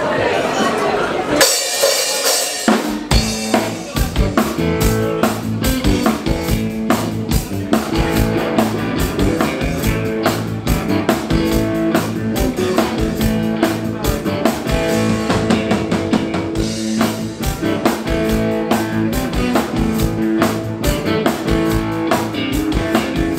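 Live blues-rock band of drum kit, electric bass and electric guitars playing an instrumental passage with a steady drum beat. The full band comes in about three seconds in, after brief voices and a short high, hissy wash.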